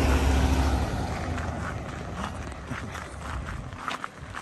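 A car driving past close by, its engine and tyre rumble loudest in the first second and fading away. Footsteps on the dirt roadside follow as short scuffs in the second half.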